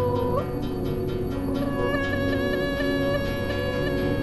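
Live experimental electronic music over a steady low drone. A held, voice-like tone slides upward shortly after the start. From about a second and a half in, a cluster of steady high tones enters, pulsing rapidly.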